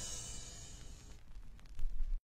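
The final sound of a 1970s funk-soul recording dying away into a faint low rumble, with a few soft low thumps near the end.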